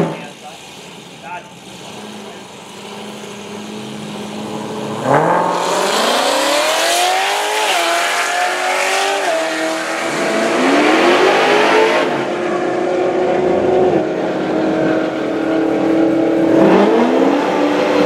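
Dodge Challenger SRT Hellcat's supercharged 6.2-litre Hemi V8 holding a steady, quieter note at the drag-strip start line. About five seconds in it launches at full throttle and runs hard down the quarter mile. Its pitch climbs in each gear and drops back at every upshift, several times over.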